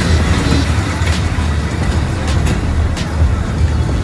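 Funfair ambience: a loud, steady low rumble with music playing under it and a few sharp clicks.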